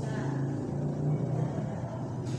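A steady low mechanical hum with no clear rhythm.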